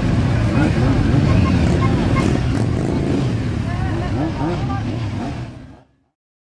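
Motorcycle engines running, with people's voices mixed in, fading out near the end.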